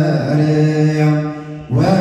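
Liturgical chant of an Ethiopian Orthodox Good Friday service: voices holding long, steady notes. The chant dips briefly near the end, then a new phrase begins with a rising slide in pitch.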